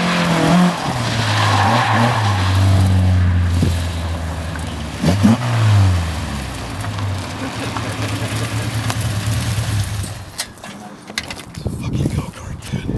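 Datsun 510 engine revving hard as the car slides with its rear tires squealing, fitted with a new Subaru limited-slip rear differential; the engine pitch dips around five seconds in, then holds a steady note. About ten seconds in the engine sound drops away, leaving a few clicks and scuffs.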